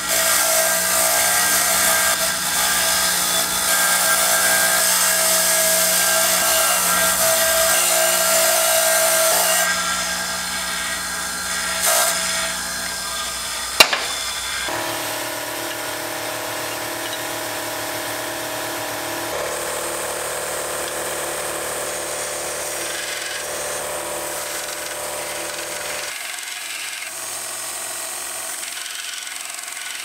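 An electric bench buffer runs steadily as a metal hand-pump part is pressed against its buffing wheel, loudest for about the first ten seconds. After that, quieter shop-machine sounds change abruptly several times, with one sharp click near the middle.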